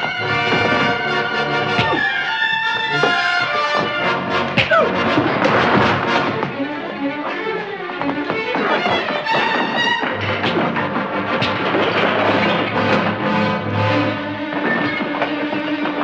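Orchestral film score with brass and strings playing throughout, loud and busy, with scattered thuds from a fistfight mixed in.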